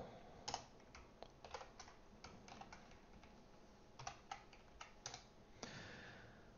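Faint typing on a computer keyboard: irregular keystrokes in short bursts.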